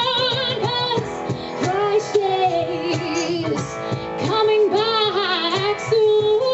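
A woman singing a live song without words that the recogniser catches, with long held notes that waver with vibrato and a few sliding runs. An electric guitar and light hand percussion keep a steady beat under her voice.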